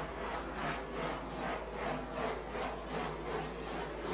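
Handheld torch flame hissing as it is swept back and forth over wet poured acrylic paint to pop surface bubbles. The hiss swells and fades in regular strokes, about three a second.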